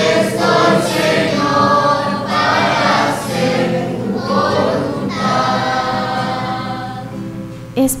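A choir singing a slow, held refrain in a few long phrases: the sung response of the responsorial psalm at Mass. The singing fades out just before the end.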